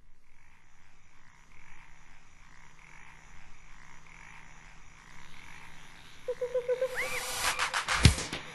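Intro of a synthpop dance track: jungle sound effects of frogs croaking in a steady repeating chorus. About six seconds in a pulsing tone and a rising glide enter, and electronic drum hits start up near the end.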